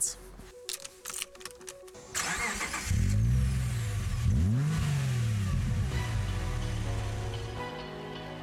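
A car engine starts about two seconds in, is revved up twice and then settles into a steady idle; background music comes in near the end.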